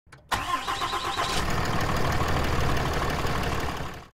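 A vehicle engine starting, then settling into a steady idling rumble that fades out near the end.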